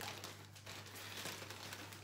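Faint crinkling and rustling of packaging being handled, a run of small rustles and clicks, over a steady low hum.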